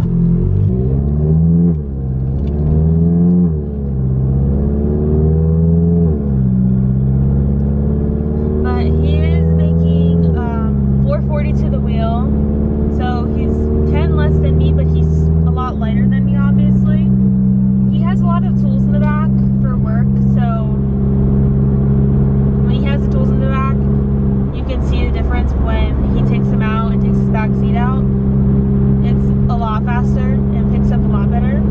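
Volkswagen GTI's big-turbo four-cylinder engine heard from inside the cabin, pulling up through the gears: its pitch climbs and drops at each upshift, four or five times over the first sixteen seconds, then holds steady while cruising.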